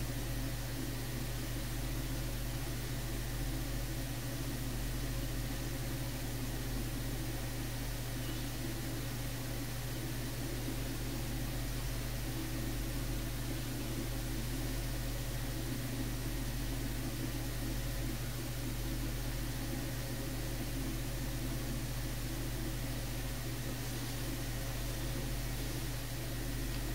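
Desktop computer running steadily while Windows boots: an even, low hum and whir from its cooling fans and spinning hard disk drive.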